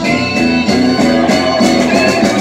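A live band playing an upbeat song, with a bowed violin over the band's rhythm.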